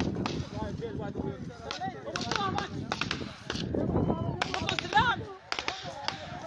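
Scattered gunfire from an armed clash, a dozen or more sharp cracks at irregular intervals, with men shouting nearby.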